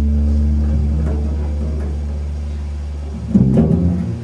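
Jazz double bass played pizzicato: one low plucked note rings and slowly fades for about three seconds, then a quick run of plucked notes starts near the end.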